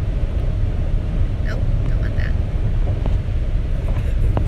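Steady low road and engine rumble inside a moving car's cabin, with a couple of faint voice sounds about a second and a half and two seconds in.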